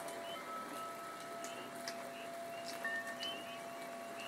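Soft layered field recordings played back together: steady light rain, wind chimes with a few long ringing tones that start and fade, and a chorus of swamp frogs chirping repeatedly.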